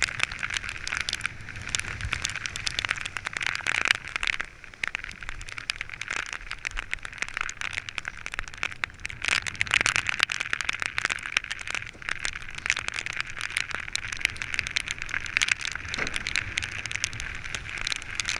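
A windsurf board planing over choppy sea: a steady rush of water and wind, thick with crackling spray and droplets striking close to the microphone.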